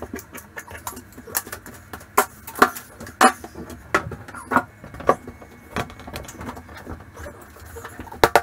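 Irregular clicks and knocks of a beadboard wainscoting panel being handled and set against the wall onto blobs of construction adhesive, over a low steady hum.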